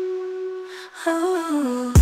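Break in a hip-hop/R&B song: the beat drops out, leaving a held note that fades, then a wordless hummed vocal line stepping down in pitch; the beat crashes back in right at the end.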